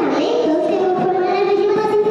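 A young girl singing through a handheld microphone, holding a long, steady note after a brief dip in pitch near the start.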